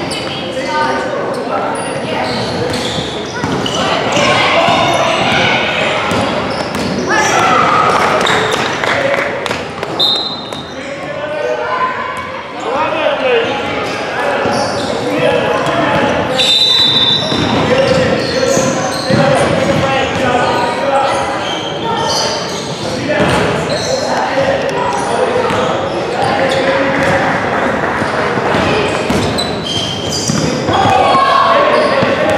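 Basketball game in a large gym: a basketball bouncing on the hardwood court among the shouts and chatter of players and coaches, with two brief high-pitched squeaks or whistles, about a third and halfway through.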